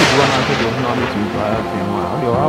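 A boom from an editing transition effect dies away over about the first second, with a man's voice going on beneath it.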